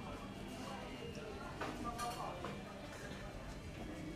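Indistinct chatter of diners in a busy eating place, with faint background music and a couple of light clicks near the middle.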